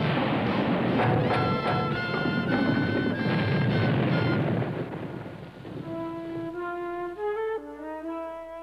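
Cartoon cannon fire: a long rumbling blast of explosion noise, with an orchestral music cue playing over it from about a second in. The blast dies away after about five seconds, leaving the music alone playing a short stepping melody.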